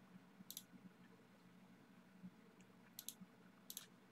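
Faint computer mouse clicks over near silence: one click about half a second in, then two quick pairs of clicks near the end.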